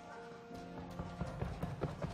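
A gymnast's running footsteps on a vault runway, starting about half a second in and quickening as he sprints toward the vaulting table, over soft background music.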